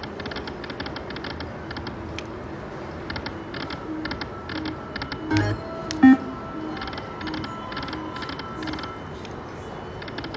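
Buffalo Gold video slot machine spinning its reels: repeated runs of rapid electronic ticking with soft repeated tones, over casino background noise, and one short louder blip about six seconds in.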